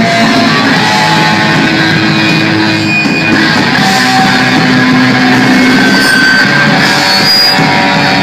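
A thrash metal band playing live at full volume: electric guitars over a drum kit.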